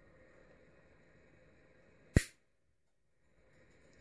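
A single sharp snap about two seconds in, as side cutters crack through the plastic retaining ring on a TIG torch handle; otherwise near silence.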